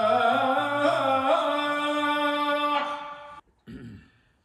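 A man chanting a solo, melismatic Islamic religious recitation into a microphone, one long drawn-out phrase with slowly wavering pitch that stops about three and a half seconds in.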